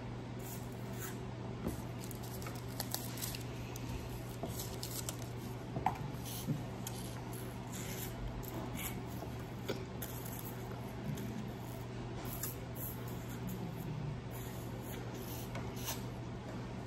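Faint, irregular sucking and slurping of thick applesauce through plastic straws, with small wet clicks and smacks, over a steady low hum.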